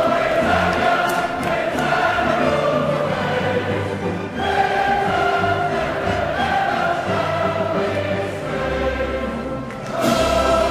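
Orchestra and a large choir singing together, in long held phrases with a short break between phrases about four seconds in.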